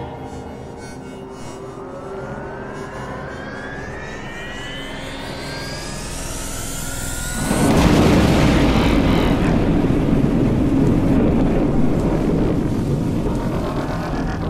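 Theatrical sound-effect cue over the theatre speakers: a layered whine rises steadily in pitch for about seven and a half seconds, then breaks suddenly into a loud, noisy rush that keeps going, marking the magic box's effect as the stage blacks out.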